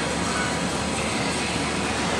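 Steady, even rushing noise of a large indoor arena, with no distinct hoofbeats or other separate strikes standing out.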